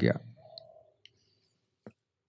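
A man's voice trails off at the start, then a near-quiet pause broken by a few faint, short clicks, the clearest one just before the end.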